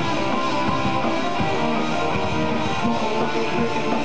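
Heavy metal band playing live: electric guitars, bass and drums at a steady, loud level with no break.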